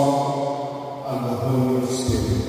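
A man's voice through a microphone, drawing out words in long, held vowels that sound half-spoken, half-chanted, with a hissing 's' near the end.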